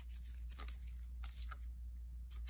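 Faint, scattered clicks and rustles of trading cards being picked up and handled by gloved fingers, over a low steady hum.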